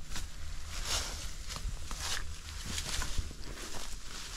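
Footsteps through brush, with pine boughs and leafy branches rustling and scraping as they are pushed aside, in many irregular crackles over a steady low rumble.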